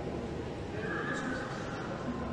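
Indistinct speech over a public-address system, heard from the audience seats of a large hall.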